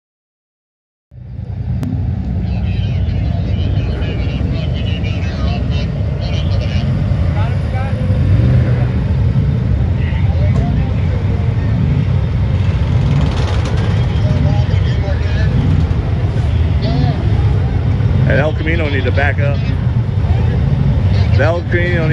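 Custom semi truck's diesel engine rumbling steadily as the truck rolls slowly in; the sound starts abruptly about a second in. People talk over it near the end.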